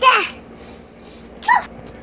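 Two short, high-pitched squeals from a young child's voice, each falling in pitch. The first comes at the very start and the second about a second and a half in.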